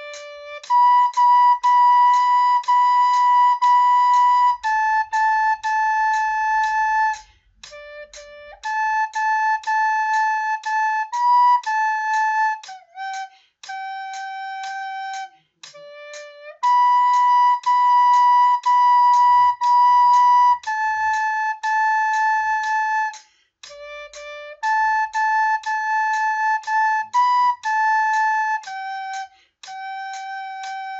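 A soprano recorder plays a simple children's melody in clear held notes on D, G, A and B. The tune runs through twice, and a metronome ticks steadily underneath.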